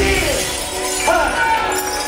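Live hip hop over a club PA: the beat breaks off with a loud crash-like burst at the start, and a voice calls out over the remaining music about a second in.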